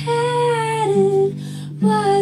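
Live band music: a woman's voice holding long sung notes over guitar chords, with a new phrase starting just before the end.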